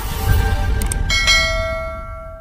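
Channel-outro sound effects over a low rumbling bed: a click, then a bell chime about a second in that rings on and fades out.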